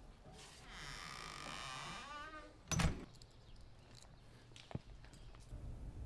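A wooden front door creaks on its hinges for nearly two seconds, then shuts with a loud thud. A single sharper click follows about two seconds later.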